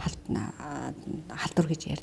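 Speech only: a woman talking, quietly and roughly at first, then more clearly.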